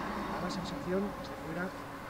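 Faint, distant speech from a voice away from the microphone, in short bursts about a second in and again near the end.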